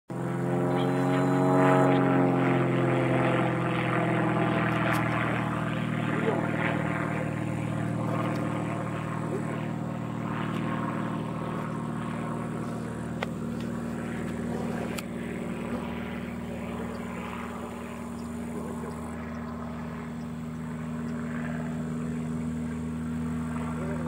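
Single-engine propeller light airplane's engine and propeller drone, steady throughout. It is loudest in the first few seconds, where the pitch slides downward.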